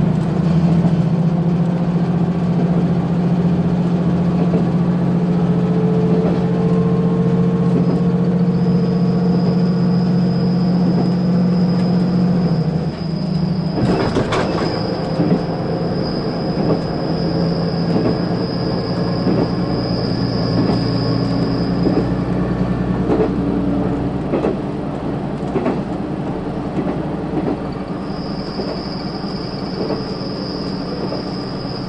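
KiHa 185 series diesel railcar running at speed, heard from inside. A steady low engine drone falls away about thirteen seconds in, and a sharp knock comes a second later. After that, scattered clicks of the wheels over the rail joints. A thin high whine comes in about eight seconds in, stops a little past twenty seconds, and returns near the end.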